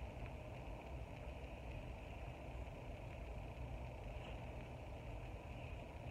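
Faint, steady low hum with a light hiss: room background noise, with no distinct sound from the crocheting.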